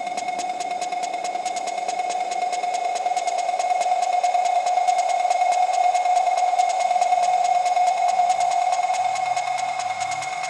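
Electro track in a breakdown: a held synth tone over rapid ticking, with no kick drum, swelling louder midway. A low stepping bassline comes back in near the end.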